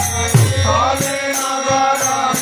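Kirtan ensemble: men singing a devotional chant over a sustained harmonium, with a double-headed khol drum and small kartal hand cymbals keeping a steady beat.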